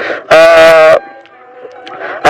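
A voice holding one long drawn-out syllable for most of a second, then a pause with faint background music.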